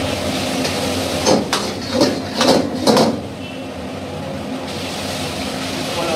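Metal ladle clanking and scraping in a steel wok as noodles are stir-fried, with several sharp strikes between about one and three seconds in. Under it runs a steady roar from the wok burner.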